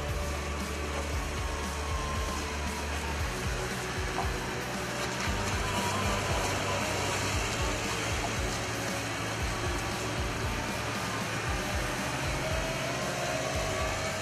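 Background music over a steady rushing machine noise from a compact wheel loader driving and turning.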